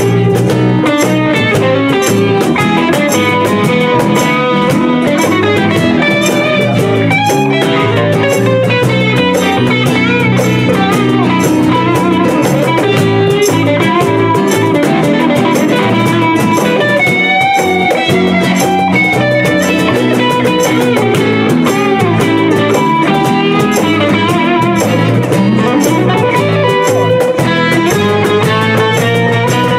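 Live band playing an instrumental passage: acoustic and electric guitars over bass and a steady hand-percussion beat.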